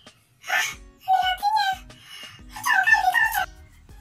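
A dramatic edited-in vocal clip over music: a breathy burst about half a second in, then a high voice sliding up and down in two phrases, the second one louder.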